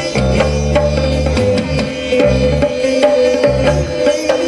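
Live rock band playing a passage without singing: electric guitar holding a steady note over bass and drums, the bass changing notes every second or so under regular drum hits.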